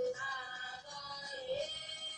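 Music with a singing voice: long held notes with slow pitch bends, one note starting just after the beginning and another swell about one and a half seconds in.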